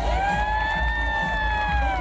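A single long high note, a voice or whoop-like call, over theatre crowd noise. It swoops up at the start, holds steady for nearly two seconds and falls away at the end.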